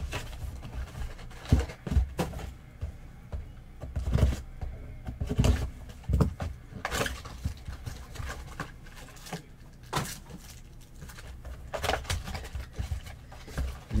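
Trading card packs and their cardboard box being handled and torn open: irregular rustling and crinkling of pack wrappers with scattered knocks of cardboard on the table.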